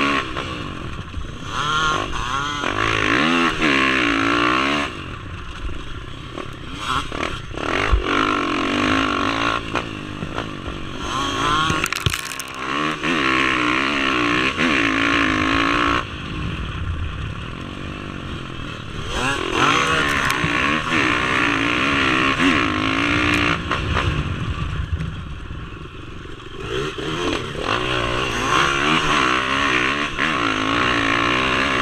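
Dirt bike engine revving up and falling back again and again as the bike is ridden hard over rough ground, with a few sudden jumps in the sound where the footage is cut.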